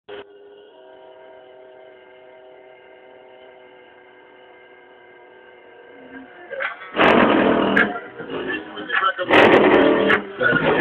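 Music played through a car stereo driving a Resonant Engineering SE 15-inch subwoofer, recorded on a cell phone. It plays quietly with steady held notes, then about seven seconds in the volume is turned up and loud, bass-heavy music takes over.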